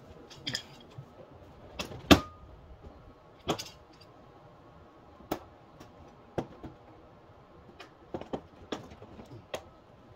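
Plastic front bumper cover of a 2017 Honda Civic being pried and pulled off at the fender, giving a string of sharp clicks and snaps as its retaining clips let go. The loudest snap comes about two seconds in.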